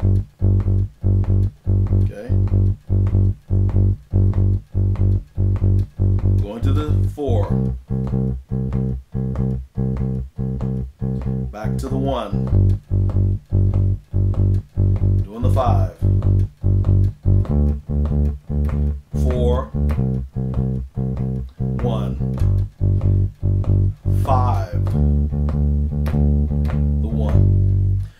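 Electric bass guitar playing a blues shuffle in G through the one, four and five chords, repeating each note at about two or three plucks a second and moving to a new root every few seconds. It turns around to the five before stopping just before the end.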